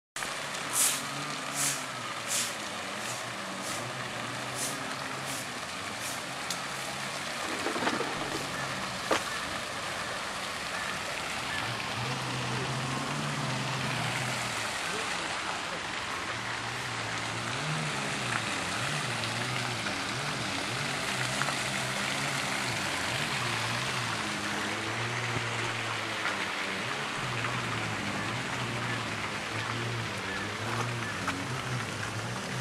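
Garden fountain splashing as a steady hiss of falling water, with people talking in the background. A few sharp clicks come near the start.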